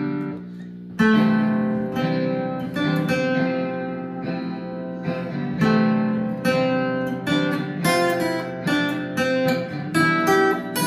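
Acoustic guitar picking a single-note melody over a backing track of strummed guitar chords in a C, F, E minor 7, A minor progression. The melody comes in about a second in, after a brief lull.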